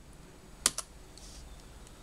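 A double-click: two quick, sharp clicks of a computer pointer button, a little over half a second in. It is the click that opens a desktop program.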